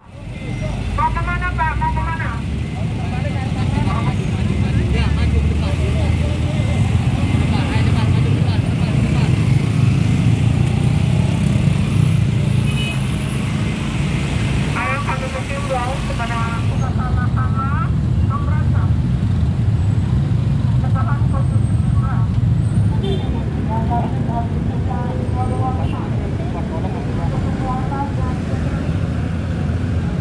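Steady low rumble of dense, slow road traffic: motorcycle and car engines idling and creeping through a checkpoint queue. People's voices call out at intervals, loudest about a second in and in the middle.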